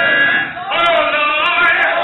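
A man's voice singing or chanting into a microphone with its pitch gliding up and down, over held musical notes from the church band.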